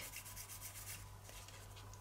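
Fingertips rubbing loose gilding flakes onto a glued edge of a paper card: a faint, papery scratching of quick repeated strokes that thins out about halfway through.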